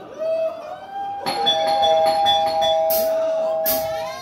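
Electronic keyboard playing a bell-like tone: a short note, then two notes held steadily for almost three seconds, opening the song. Two cymbal strikes come near the end.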